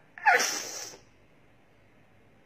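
A woman crying gives one brief, breathy sob with a falling voiced tone.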